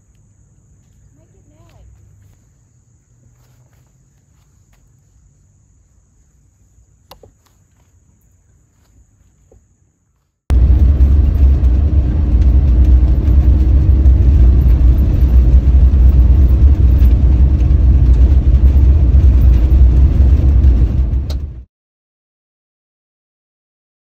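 Faint, with a thin steady high insect drone, for about ten seconds; then suddenly a loud, steady low rumble of a vehicle driving along a gravel road, which cuts off shortly before the end.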